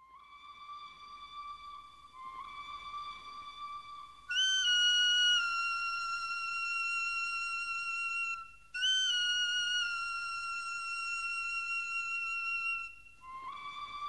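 Music: a high wind-instrument melody of long held notes opening a song. A lower note sounds for about four seconds, then a louder, higher note is held for about four seconds, breaks briefly, is held again for about four seconds, and drops back to the lower note near the end.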